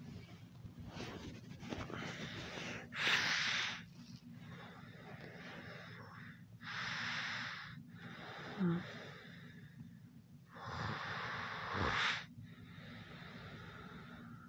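Heavy, airy breathing: three long breaths about four seconds apart, with a brief low voiced whimper between the second and third, over a faint steady hum.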